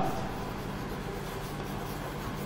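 Chalk writing on a chalkboard: a faint, steady scratching of chalk across the board, over a low steady hum.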